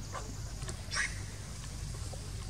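A short, high-pitched animal call about a second in, with a fainter, falling call just before it, over a steady low rumble.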